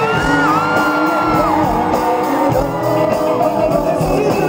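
Live band music with singers, recorded loud from within the audience, with a long high note held through the first second and a half and shouts over the music.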